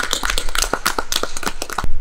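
A small, spread-out audience applauding, many quick separate claps running together.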